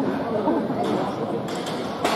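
Indistinct chatter of many voices from spectators and officials in a large indoor sports hall, no single voice standing out.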